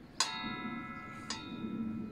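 Steel circular saw blade being fitted by hand onto a table saw's arbor: two metallic knocks about a second apart, each setting the blade ringing like a bell for a moment before it fades.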